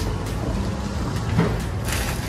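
Steady low background rumble, with a faint brief sound about a second and a half in.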